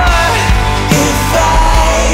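Rock band music at full volume: a high held melody note slides off just after the start, and a new one glides up and holds about one and a half seconds in, over bass and drums.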